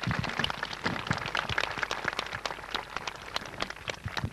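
Audience applauding: a dense, irregular patter of many hands clapping that starts suddenly and goes on steadily, easing off near the end.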